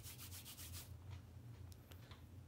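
Faint rapid rubbing or scratching strokes in about the first second, over a steady low hum, with two faint clicks near the end.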